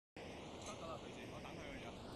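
City street ambience: a steady hum of traffic with indistinct voices of passers-by.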